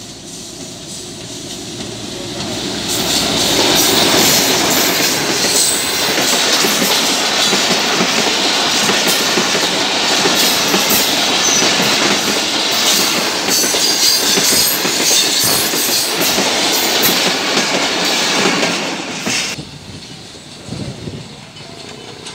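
Pakistan Railways passenger train passing a level crossing at speed. The diesel locomotive's noise builds over the first three seconds, then comes a long loud rush of the coaches with rapid clicking of wheels over the rail joints. The sound drops off suddenly about two and a half seconds before the end.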